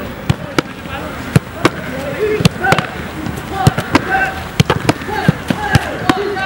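A rapid, irregular series of sharp thuds, a dozen or so, of footballs being kicked and smacking into goalkeeper gloves. Voices call out in the background between them.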